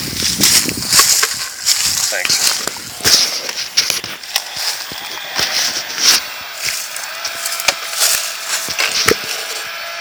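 Handling noise from the recording phone: scattered clicks, knocks and rustling as it is moved and rubbed, with no chainsaw running.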